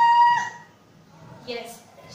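A woman's mock-fright scream: one high, held cry that stops about half a second in, followed by faint voice sounds.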